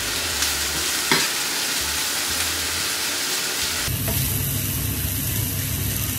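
Floured pork and sliced green peppers sizzling in a frying pan, stirred with a wooden spatula: a steady frying hiss, with a short click about a second in and a fuller, lower sound from about four seconds in.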